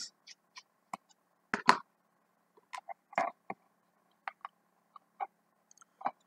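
Scattered small clicks and taps of an analogue voltmeter's plastic case and parts being handled as it is taken apart, the two loudest about one and a half seconds in.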